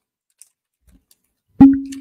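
Near silence, then about one and a half seconds in a sudden loud single steady tone that fades out within half a second.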